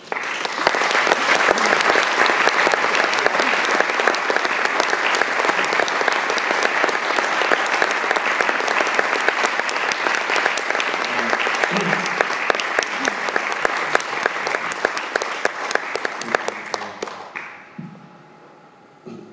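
Audience applauding throughout an auditorium after a piano piece ends, starting suddenly as the music stops and dying away near the end.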